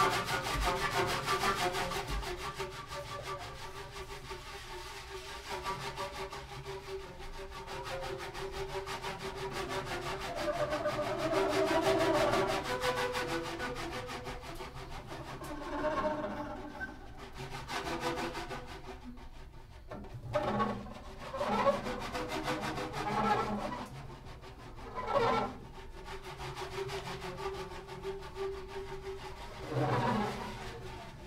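Two double basses bowed in free improvisation, one prepared with objects on its strings, giving scraping, rubbing sounds over a held low tone. From about halfway, short louder bowed strokes come every second or two before the held tone returns near the end.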